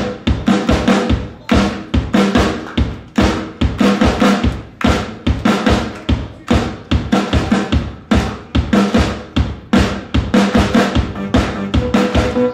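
Live drum kit playing a steady beat on bass drum and snare, with hands clapping along in time.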